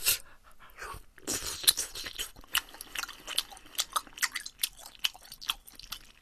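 Close-miked chewing of soft, chewy tteokbokki rice cakes in spicy sauce: an irregular run of wet smacking and clicking mouth sounds.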